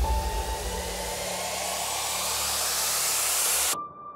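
A white-noise riser sound effect in a trailer-style soundtrack, swelling and climbing in pitch while the bass drops away. It cuts off suddenly near the end, leaving one steady high tone.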